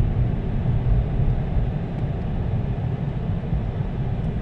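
A car driving, its engine and road noise a steady low rumble heard from inside the cabin.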